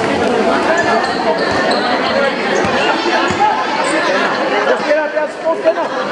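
Crowd of spectators chattering at a basketball game, many voices overlapping, with a basketball bouncing on the court a few times as a player dribbles.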